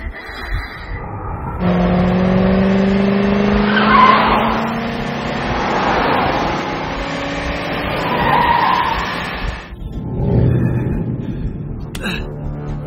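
Car engines revving with a rising pitch and tyres squealing, starting about one and a half seconds in and cutting off suddenly near the end, with two sharper squeals standing out midway and late.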